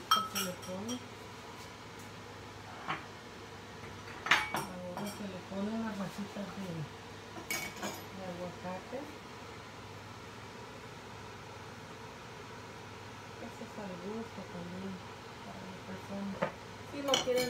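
A metal spoon clinking against a ceramic gravy boat and plate: three sharp clinks a few seconds apart, the first right at the start.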